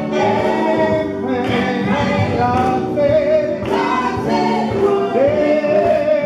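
Gospel vocal group of men and women singing together in harmony, holding long sustained notes.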